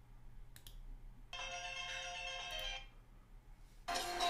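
A faint click about half a second in, then the soundtrack of the embedded GoPro HERO6 promo video playing from the computer: a held chord for about a second and a half, a short pause, and the music coming in louder just before the end.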